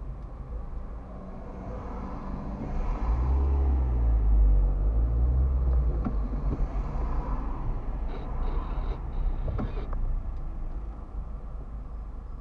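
A heavy dump truck's diesel engine pulls up alongside, heard from inside a car. Its low rumble grows to be loudest about four seconds in, the pitch rising and falling as it accelerates, then eases back to the steady low drone of traffic.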